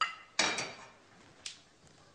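Tableware clinking: a light clink, then a louder, ringing clink about half a second in, and a smaller clink about a second and a half in.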